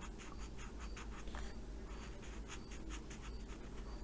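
AspireColor alcohol marker scratching on a colouring-book page in many quick, short strokes as a small section of a mandala is filled in; faint.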